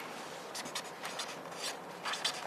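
Several pens scratching on paper notepads in short, irregular strokes as names are written down.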